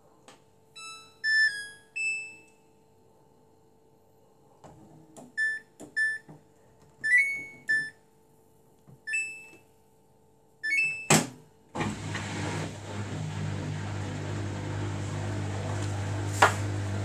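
Samsung Bespoke AI front-loading washing machine's control panel chiming: a short rising tune as it switches on, then several short beeps as options are touched, with a last beep about eleven seconds in as the cycle is started. Right after that the machine starts up with a steady hum and whir as it begins sensing the load.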